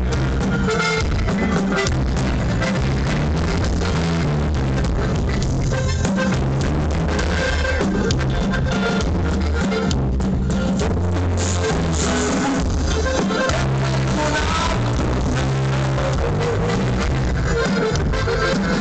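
A live band playing, recorded from within the crowd: drum kit and strong bass lines with guitar, loud and steady throughout.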